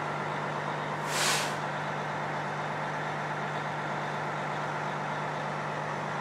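A steady low mechanical hum, with one short burst of hiss about a second in.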